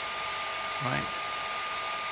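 Panasonic EH-NA45 hair dryer running on its lower fan speed at the lowest heat, a steady rush of air with a thin steady whine.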